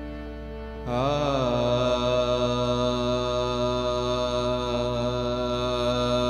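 A man's voice enters about a second in with a short turn in pitch, then holds one long sung note of devotional kirtan over a steady instrumental drone.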